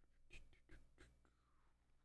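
Near silence: room tone with three faint taps close together in the first second, followed by a faint brief scrape.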